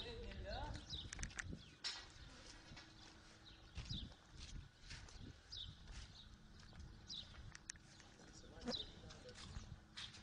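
Low steady rumble, like wind on the microphone, with scattered short high chirps falling in pitch, a few sharp clicks and faint voices.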